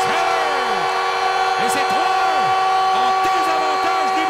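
Arena goal horn sounding one long steady chord over a cheering hockey crowd, right after a home-team goal.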